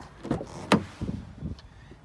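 Chevrolet Captiva's front door being opened: a sharp latch click about two thirds of a second in, with handling and swinging noise around it.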